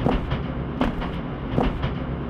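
Train rolling along the track with a low rumble, its wheels clacking over rail joints a few times.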